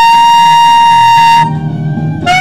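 Alto saxophone holding one long, bright high note that breaks off about one and a half seconds in, over a backing track that keeps playing.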